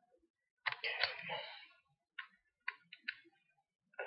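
Small Allen key working a post screw on a Velocity-style rebuildable atomizer deck to snug down the coil leads: a soft rustle about a second in, then three light metallic clicks about half a second apart.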